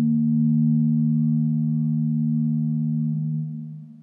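Intro sound logo: a steady, low humming chord of two held tones, like a singing bowl's drone, that fades away in the last second.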